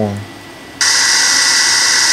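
Loud steady hiss that cuts in suddenly a little under a second in: the background noise of a vocal track recorded through a Mac's built-in microphone, as GarageBand starts playing it back.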